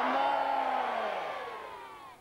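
A man's voice holding one long call that slowly falls in pitch and fades over about a second and a half.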